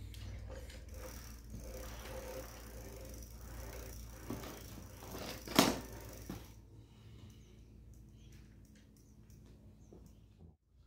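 Trike front wheel and pedals being turned and handled by hand, with one sharp knock a little past halfway; quieter over the last few seconds.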